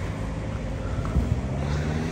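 Road traffic rumble with wind buffeting the microphone, and a car's engine hum building about halfway through as it approaches.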